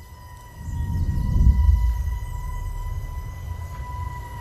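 Eerie horror-trailer score: a steady high held tone over a low rumbling drone that swells about a second in and then eases off.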